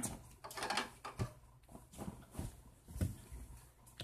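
Quiet room with a scattering of faint, soft knocks and rustles, about half a dozen over four seconds: small handling sounds of people moving on a bed, around a baby's board book.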